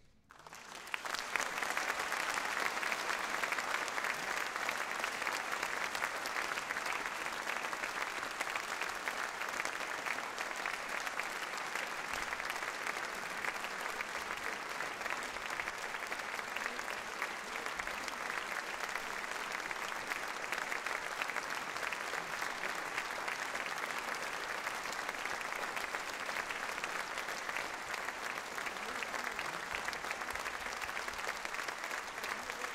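Concert audience applauding, the clapping rising about a second in and then holding steady.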